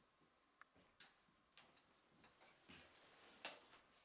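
Near silence in a small room, broken by faint, irregular clicks and soft rustles, the loudest a sharp click about three and a half seconds in.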